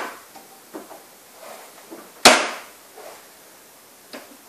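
A few faint clicks, then one sharp knock about two seconds in with a short ringing tail: a lacquered MDF TV-stand compartment being handled and shut.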